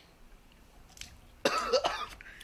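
A man coughing harshly in one short burst about one and a half seconds in, right after chugging a can of beer.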